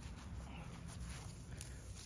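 Faint footsteps on grass as a person walks, over a low rumble, with a few soft ticks.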